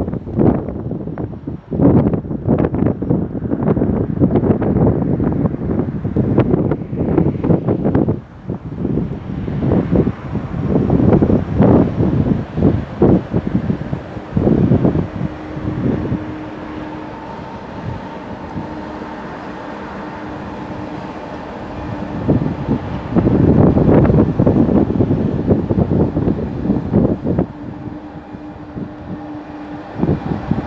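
Wind buffeting the microphone in irregular gusts, with an electric train running through on a far track; from about halfway a steady whine from the train's drive sits under the wind.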